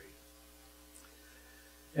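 Steady low electrical mains hum from a microphone and sound system, heard faintly in a pause between spoken sentences.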